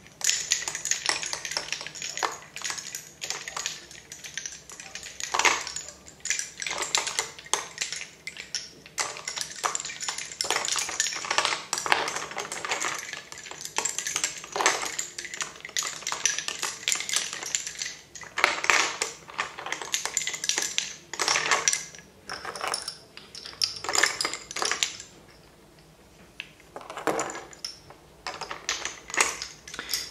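Lace bobbins clicking and clattering against one another in quick, irregular runs as pairs are worked and pulled taut on a bobbin-lace pillow, with a short pause near the end.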